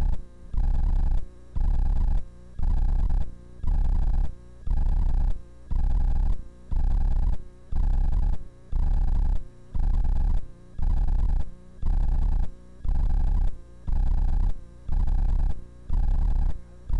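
A loud pulsing buzz repeating about once a second: each pulse lasts nearly a second, with a short break before the next.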